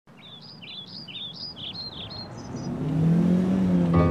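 Birds chirping in a quick run of short stepped notes, then a car engine humming, growing louder as it approaches from about two and a half seconds in.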